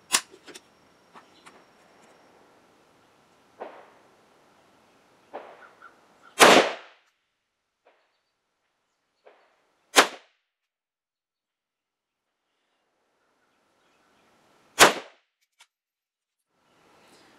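Zastava M70 N-PAP AK-pattern rifle in 7.62×39 firing three slow, aimed single shots a few seconds apart, each a sharp crack with a short echo. A smaller click comes right at the start, and there are faint handling sounds between the shots.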